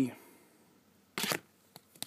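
Trading cards in hard clear plastic holders being handled and swapped, with a brief plastic rustle a little over a second in and a faint click shortly after.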